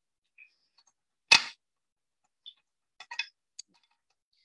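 Handling noise at a fly-tying vise as wire and thread are worked over the shank: one sharp click about a second in, then a few lighter clicks near the end.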